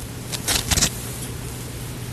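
Leaves and stems of a large overgrown houseplant rustling as a hand pushes into the foliage, a few brief crackles in the first second, over a steady low hum.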